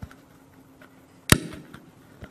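A single sharp knock, loud and close to the microphone, about two-thirds of the way in, followed by a softer knock and a few faint clicks over a low steady hum.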